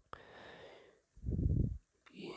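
A man breathing close to the microphone: a soft breath, then a louder, low puff of breath lasting about half a second.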